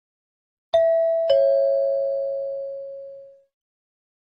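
Two-note ding-dong chime: a higher tone, then a lower one about half a second later, both ringing on and fading away over about two seconds. It is the cue that opens a recorded listening-test dialogue.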